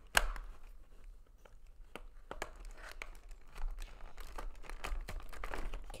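Clear plastic blister packaging crinkling and clicking under hands trying to pry it open, with a sharp click just after the start. The pack is not giving way by hand.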